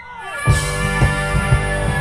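Live rock band. A single line glides down in pitch, then about half a second in the whole band comes in loud, with distorted electric guitar, cymbals, and drum hits about four a second.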